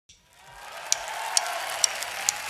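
A drummer's count-in: three sharp clicks about half a second apart over a soft room hum that fades in from silence, marking the tempo just before a rock band starts a song.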